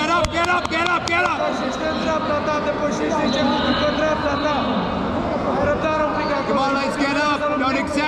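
Raised voices of several people calling out across a sports hall during a grappling bout, overlapping one another, with a few sharp clicks in the first second or so.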